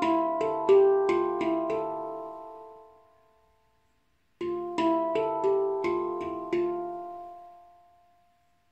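Steel handpan played with the hands: a quick run of struck notes that ring and fade out over a couple of seconds, then after a short pause a second similar run about four and a half seconds in, left to ring out near the end.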